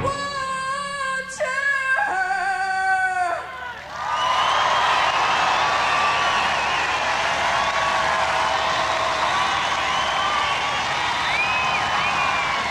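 A female singer holds a high note in two long stretches after the band stops, ending in a falling slide about three and a half seconds in. Then a large crowd cheers and whistles steadily.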